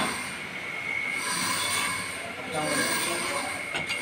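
Metallic squeal of a steel blade scraping along a steel drum, swelling and fading in waves, with a knock at the start.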